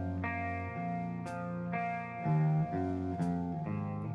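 Live band instrumental: an electric guitar plays held chords that change roughly every half second, with drum cymbal hits about a second in and again near the end.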